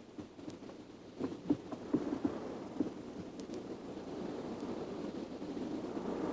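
A low rumbling noise that grows slowly louder, with a few short knocks in the first three seconds.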